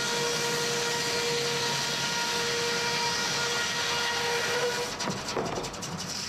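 Large circular head saw of a sawmill spinning and cutting through a log: a steady hiss with a held whining tone, which drops away about five seconds in, followed by a few clatters.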